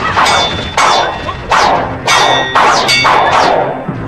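Blades clashing in a fight: about six sharp metallic clangs in quick succession, several ringing on, each with a falling whoosh.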